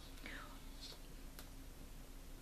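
A woman's faint, breathy whispered sounds, with a short sharp click about one and a half seconds in.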